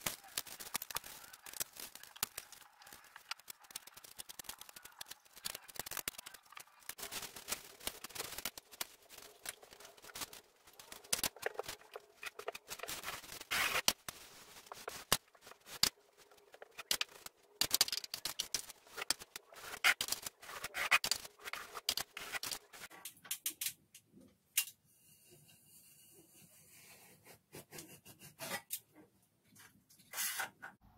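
A drywall knife scraping joint compound along a ceiling edge and against the mud pan: irregular short scrapes and clicks, sparser and quieter over the last several seconds.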